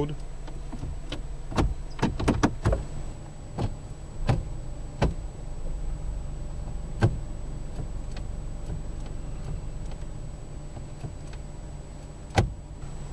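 The Mazda 5's 2.5-litre four-cylinder engine idling steadily, heard from inside the cabin. Short clicks from the automatic transmission's gear lever being moved and tapped in its manual gate are scattered over the first seven seconds, several close together around two to three seconds in and a sharper one about seven seconds in.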